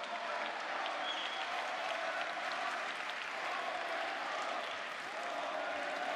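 Audience applauding steadily, a dense continuous clapping with crowd voices faintly mixed in.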